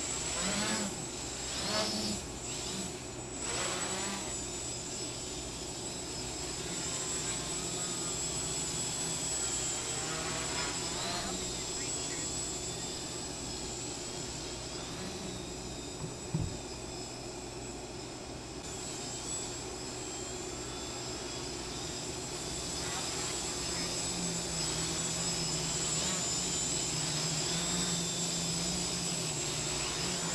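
X525 quadcopter's motors and propellers buzzing steadily in flight, the pitch wavering up and down as the throttle changes. A single sharp click sounds about halfway through.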